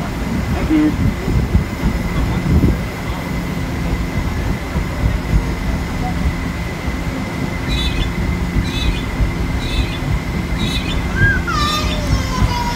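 A paddle steamer under way: a steady low rumble from its engine and paddlewheels, with a faint constant whine above it. Several short high chirps come in over the last few seconds, ending in one falling whistle-like call.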